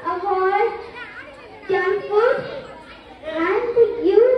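Speech only: a young girl's voice speaking into a microphone, in short phrases with brief pauses.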